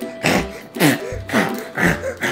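A girl making about four short pig-like noises, each falling in pitch, with a fidget toy pressed over her nose and mouth. Background music plays underneath.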